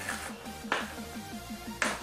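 Background electronic music with a steady fast pulse. Over it, packing tape is sliced and ripped off a cardboard box in short rasping bursts, three of them, the loudest near the end.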